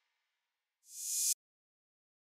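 A reversed open hi-hat sample played once: a hissy cymbal swell that rises over about half a second and cuts off abruptly a little past the middle.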